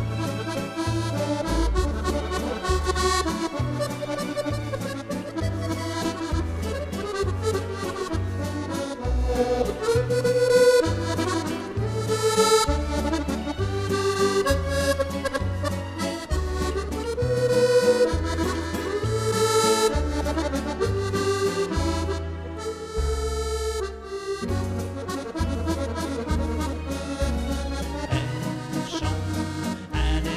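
Maugein chromatic button accordion playing an instrumental waltz passage: a moving melody over a steady, regular bass line.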